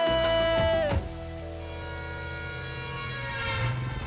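The ending of a Tamil film song: one long held note that drops off about a second in, then a quieter sustained chord that rings on and swells slightly near the end.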